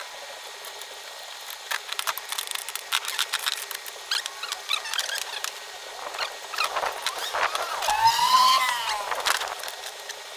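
Small clicks and knocks as hands work a steel shovel blade on its wooden handle and handle tools and bolts. About three-quarters of the way through comes a squeak that rises and falls in pitch for about a second.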